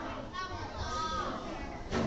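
Children's voices calling out over a murmur of chatter, with a couple of short high-pitched calls about half a second and one second in.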